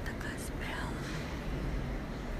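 Quiet whispered speech in the first second, over a steady low background rumble inside a large stone cathedral.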